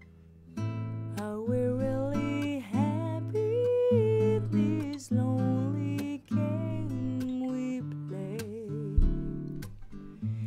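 Playback of a raw acoustic guitar and vocal recording, starting about half a second in. The acoustic guitar is picked up by two microphones, one at the soundhole and one at the neck, panned left and right. Both the guitar and the singing voice have a low cut at 100 Hz and no reverb or other effects.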